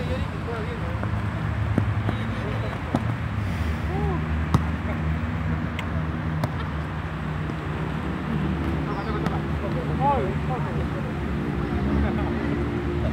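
Players' brief shouts and calls during a football match, over a steady low rumble like nearby traffic. A few sharp knocks sound, the clearest about four and a half seconds in.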